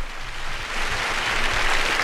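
Studio audience applauding, swelling in volume.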